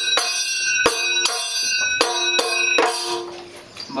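Kathakali percussion accompaniment: metal cymbals struck in a run of sharp clashes, each ringing on with long metallic tones, fading away near the end.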